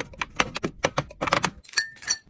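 Soda cans and glass Coca-Cola bottles being handled and set down, a quick irregular run of clicks and taps with a short ringing glass clink near the end.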